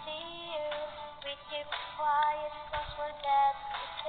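A woman singing a melody over backing music.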